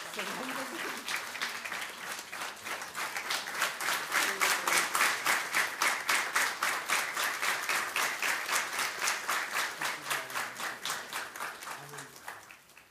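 Audience applauding. Scattered at first, the clapping falls into a steady rhythm of about three claps a second, then dies away near the end.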